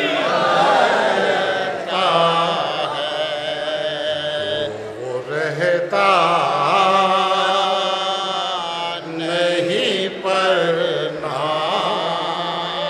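Soz (Shia mourning elegy) chanted by unaccompanied male voices: a lead reciter with other men joining. It comes in long, held melodic phrases with brief breaks between them.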